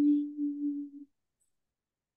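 A single steady low tone lasting about a second, swelling slightly two or three times before cutting off.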